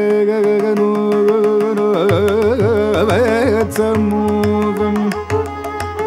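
Carnatic classical music: a male voice and violin holding and ornamenting a melodic line with sliding pitch bends, over mridangam strokes. Deep bass mridangam strokes join about two seconds in.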